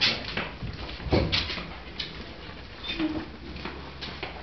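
Large wooden prayer wheel being pushed round by hand, turning on its base with a low rumble and several wooden knocks, the loudest just after a second in.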